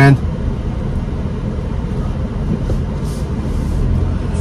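Low, steady rumble of a 2023 Audi Q5 with a 2.0-litre turbo engine driving slowly, heard from inside the cabin: road and running noise at low speed.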